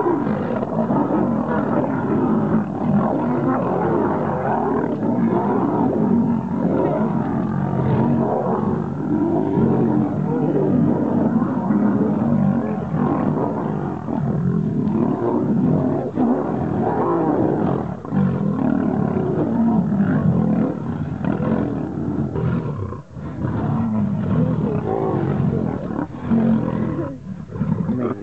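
A pride of lions, a male and several lionesses, snarling and growling as they scuffle together. It is a continuous loud din, with a couple of brief lulls near the end.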